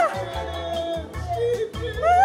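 A woman's high, long excited scream falls in pitch and breaks off at the very start, followed by background music with a steady beat and a few short voice fragments; another scream rises in right at the end.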